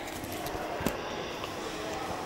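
Metro platform ambience: a steady hum and hiss of the empty underground station, with one sharp click a little under a second in.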